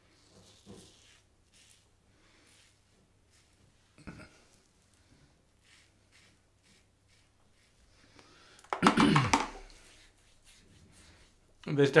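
Faint, scratchy short strokes of a safety razor cutting lathered stubble along the beard line, then a short, loud vocal sound from the shaver about nine seconds in.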